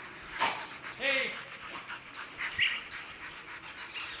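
A dog gives a single short bark about a second in, after a sharp click; a brief high-pitched sound follows later.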